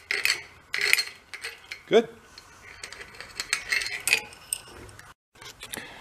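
A moped's roller chain clinking and rattling as it is flexed by hand, its links stiff and being freed up after a soak in gasoline.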